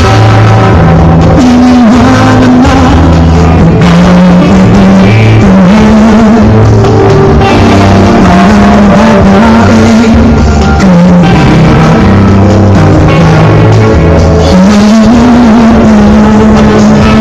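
A live rock band playing loud, amplified music: drums and bass under a held, wavering melody line.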